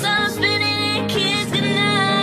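Pop song: a woman singing long held notes over an instrumental backing.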